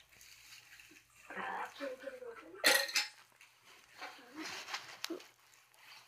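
Dishware clattering as a person grabs a drink to cool a mouth burning from hot jalapeño peppers, with a sharp knock just under three seconds in as the loudest sound. Short vocal sounds come before and after it.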